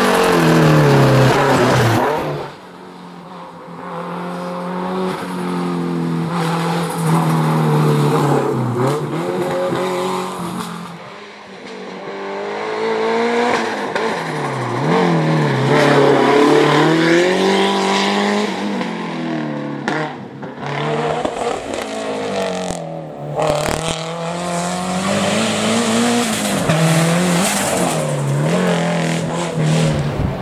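Fiat Coupe Turbo race car's engine revving hard and easing off again and again as it accelerates, brakes and shifts through a slalom course, its pitch climbing and dropping every second or two as it passes close by. The sound falls away briefly twice as the car draws off.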